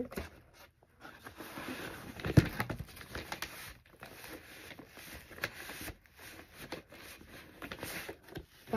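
A large folded paper poster rustling and crinkling as it is handled and folded, with one sharp knock about two and a half seconds in.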